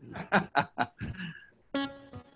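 A man chuckling in a few short breathy pulses, then a single musical instrument note that starts sharply near the end.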